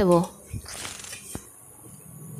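A metal spatula stirring and scraping through a watery shrimp and taro-stolon curry in a steel pan, with one light tap of the spatula on the pan about halfway through.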